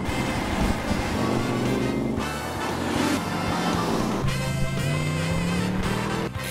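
Instrumental music playing steadily at a fairly loud level.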